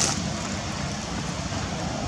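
Steady outdoor background noise, a low rumble with hiss, with a brief sharp click at the very start.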